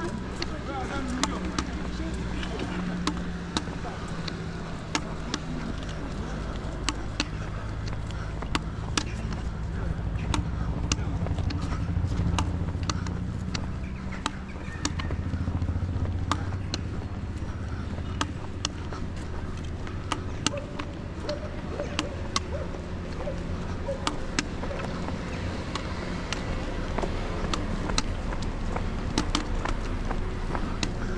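Walking on a paved street: sharp, regular taps about once a second from steps and trekking poles, over a steady low traffic rumble.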